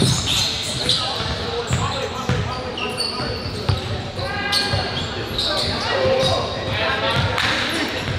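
Basketball bouncing on a hardwood gym floor, with sneakers squeaking and indistinct players' voices echoing in the hall.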